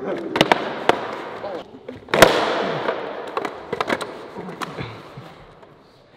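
Bongo board deck and roller clacking on a concrete floor as the rider comes off it: a few sharp clacks, then one loud slap about two seconds in, followed by a rolling rumble that fades over the next few seconds.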